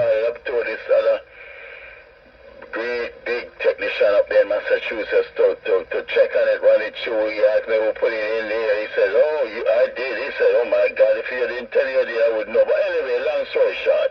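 A voice talking over a two-way radio, heard through the rig's speaker with a thin, cut-off sound; it pauses briefly between about one and three seconds in.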